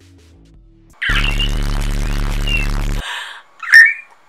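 A whistling kettle sound effect, loud, for about two seconds, with a buzzing undertone, followed near the end by a short, sharp high-pitched squeal.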